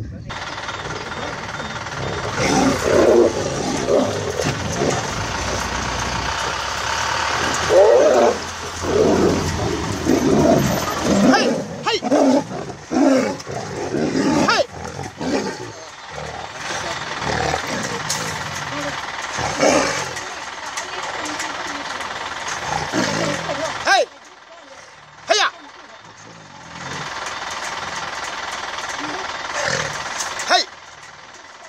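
Two tigers fighting, snarling and roaring in loud irregular bursts through the first half, fewer later on.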